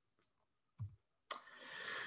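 Mostly near silence, broken a little over a second in by one faint click as the presentation slide is advanced, followed by a quiet breath drawn in that swells toward the end.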